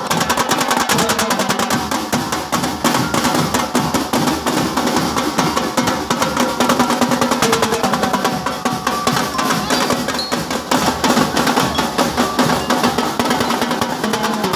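Drum and lyre marching band playing: fast, continuous snare drumming with bass drum beats, and bell lyres ringing out a melody over it.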